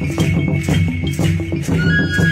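Traditional Chichimeca Jonaz music: a steady beat of about four strokes a second on a hand drum with rattling percussion over a low pitched layer. A high flute note comes in near the end.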